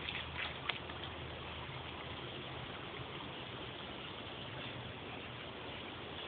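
Shallow creek water running with a steady hiss, with a couple of splashes from feet wading through it in the first second.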